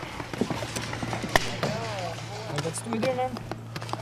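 Low voices of players talking quietly, with a few sharp paintball pops, the clearest about a second and a half in.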